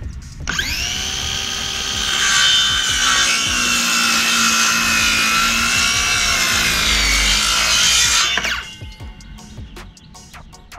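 Cordless circular saw cutting through a wooden 4x4 post: the motor whines up to speed, strains as the blade works through the wood for about eight seconds, then spins down.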